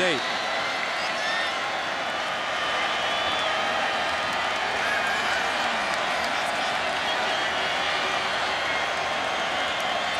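Large stadium crowd making a steady, dense noise of cheering and shouting, with no single voice standing out.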